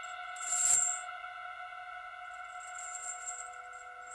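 Ambient drone intro to a metal punk track: several steady held tones with a metallic high shimmer that swells in and out, loudest just under a second in.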